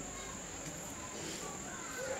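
A pause in speech: the room tone of a hall, with a steady high-pitched tone running under it throughout.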